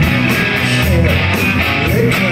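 Live rock band playing a passage between vocal lines, with two electric guitars, electric bass and drums.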